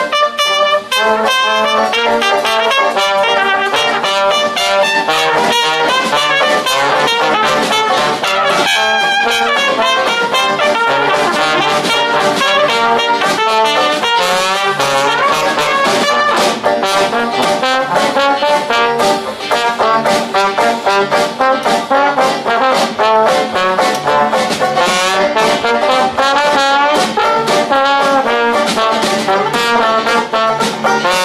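Dixieland jazz with trombone and trumpet playing together in an instrumental chorus, in New Orleans style.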